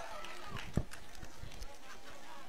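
Pause in amplified speech: faint outdoor background of distant voices, with one soft knock a little under a second in from a handheld microphone being passed over.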